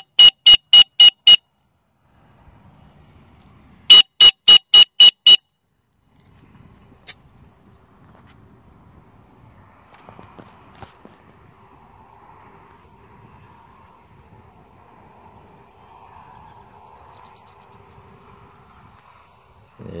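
Dog-training whistle blown in two series of six short, identical high toots, about four a second, the second series a few seconds after the first: the multiple-toot recall signal for a retriever.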